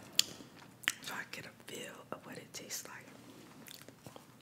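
Close-miked handling of a fried chicken sandwich and fries on their paper wrapping: a few sharp clicks and soft crinkles, with quiet mouth sounds.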